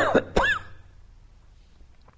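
A man coughing twice in quick succession, clearing his throat.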